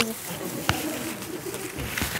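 Low, quiet murmuring of a voice with a single sharp click about two-thirds of a second in.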